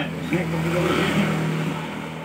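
A road vehicle passing by, its engine and tyre noise swelling to a peak about a second in and then fading, over a steady low hum.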